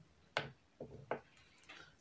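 Faint plastic clicks of felt-tip marker caps being pulled off and snapped on as one marker is swapped for another: one sharp click about a third of a second in, a few smaller clicks around the one-second mark, and fainter ones near the end.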